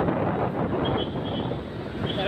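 Motorcycle riding at speed in traffic: steady engine and road noise mixed with wind on the microphone.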